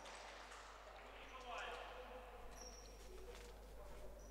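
Faint echoing ambience of an indoor futsal hall: distant players' voices carrying across the hall, with a few soft knocks and a low steady hum underneath.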